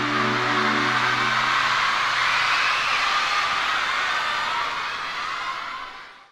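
The band's last held chord dies away within the first second or two, and steady audience applause and cheering fills the rest, fading out at the very end.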